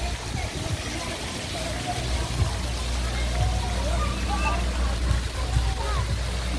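Water from a pool fountain splashing steadily into a swimming pool, with faint voices of people in the background.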